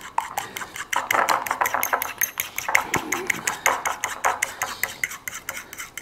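A metal utensil stirring a thick mayonnaise sauce in a bowl, clinking and scraping against the bowl several times a second as water is mixed in to thin it.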